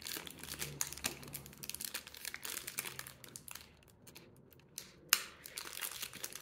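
Foil wrappers of Pokémon booster packs crinkling in a string of small crackles as the stack of packs is handled. The crackles thin out to a quiet stretch near four seconds, followed by a single sharp click about five seconds in.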